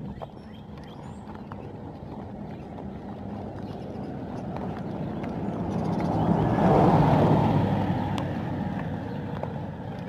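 A motor vehicle passing by, its engine and tyre noise building slowly to a peak about seven seconds in and then fading, over a steady low rumble of wind and riding noise.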